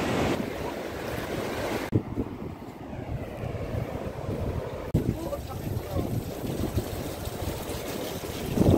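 Wind buffeting the microphone over the wash of surf on a sandy beach, with faint distant voices. The noise changes abruptly about two seconds and five seconds in.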